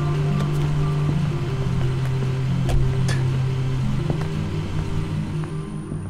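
Car engine idling with a low, steady drone, under a film score of stepped synth notes. A few brief knocks come about three seconds in.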